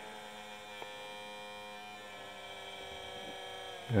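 Steady electrical hum made of several fixed tones, from a 300-watt 12 V DC-to-AC power inverter running. There is a faint click about a second in.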